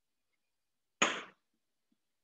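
A single brief knock about a second in, sharp at the start and quickly dying away.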